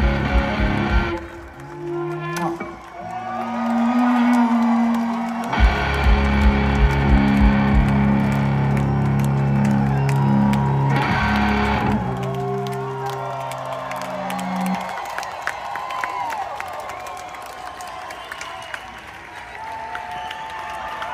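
Live band's closing chords: amplified guitar and bass hold big ringing chords over drum hits, then stop about fifteen seconds in. Crowd cheering follows.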